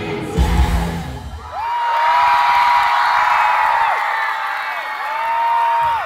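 A live rock band's song ends with the drums and bass in the first second and a half. Then a concert crowd cheers and screams, with several long high-pitched shrieks held over the noise.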